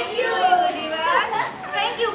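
A group of children chattering, several voices at once.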